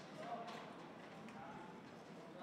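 Faint, distant voices in a large hall, with a few light clicks and knocks over a steady room hum.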